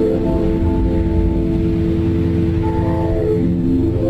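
Slow ambient background music: long held tones, like a droning pad, over a deep low rumble.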